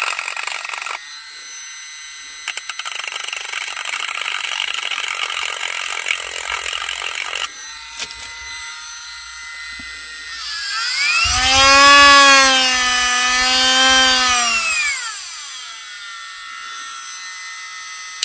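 Milwaukee M12 cordless rotary tool spinning a sanding drum, its motor whining steadily. For about the first second, and again from about 2.5 to 7.5 s, the drum grinds against the edge of a slingshot frame with a rasping sound. Then, running free, the whine climbs in pitch, holds, and falls back over about four seconds as the speed is raised and lowered, and it cuts off at the end.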